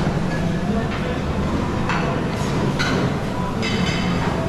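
Busy buffet restaurant ambience: a steady murmur of diners' voices over a low rumble, with dishes and cutlery clinking about four times.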